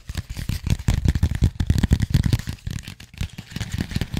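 A mandala colouring book handled and riffled right at the microphone: a fast run of rustles, flaps and taps, loudest in the middle.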